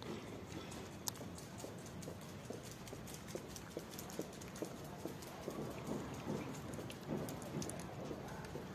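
A cat chewing dry kibble: a quick, irregular run of small crunches and clicks, thickest in the second half.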